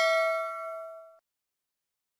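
Bell-like notification ding from a subscribe-button sound effect, struck just before and ringing on in several clear tones that fade, then cut off abruptly a little over a second in.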